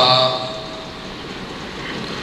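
A pause in a man's chanted recitation over a microphone and loudspeaker system: his last note fades away in the first half-second, leaving a steady hiss of background noise.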